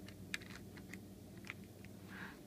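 A few faint, light clicks of plastic as a model trolley is fitted onto plastic toy-train track by hand, two of them a little sharper than the rest.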